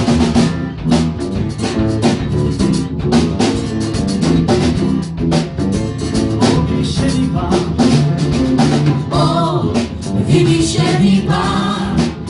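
Live worship band playing a song: a drum kit and percussion keep a steady beat under guitars, with singing voices.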